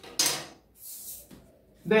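A ruler sliding across a wooden tabletop: a short, loud scrape about a fifth of a second in, and a fainter one about a second in.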